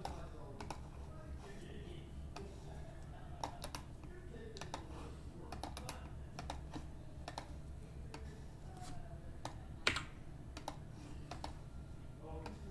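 Computer keyboard being typed on in irregular keystrokes and clicks, one click louder than the rest near the end, over a steady low hum.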